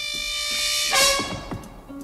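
Jazz-band orchestral music: a held brass chord swells louder and ends on a sharp accented hit about a second in, followed by a few short drum strokes as it dies away.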